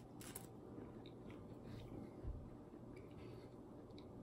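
Faint bite into a flaky pastry just after the start, then quiet chewing with a few small crackles and a soft thump a little over two seconds in.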